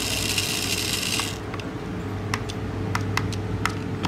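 A mini 1:64 remote-control toy car's tiny electric motor and plastic gears whirring, high-pitched, as its wheels spin in reverse with the car held in the hand; the whir stops after about a second and a half. It is followed by a series of sharp, separate clicks.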